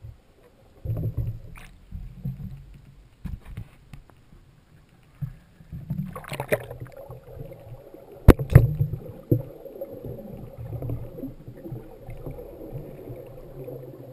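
Muffled underwater sound from a camera in a waterproof housing: low rumbling and sloshing of moving water, with a few sharp knocks, the loudest about eight seconds in, and a faint steady hum from about six seconds in.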